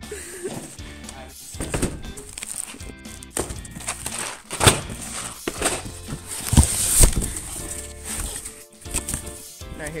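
Background music with the crinkling of plastic shrink-wrap and knocks of cardboard as boxed candy packs are handled and moved, with two louder thumps about halfway through.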